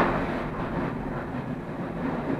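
Train rolling along the track: a steady rumble of wheels on rail, with one sharp wheel knock over a rail joint right at the start.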